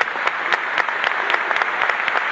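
Live theatre audience applauding, many hands clapping in a dense, steady run.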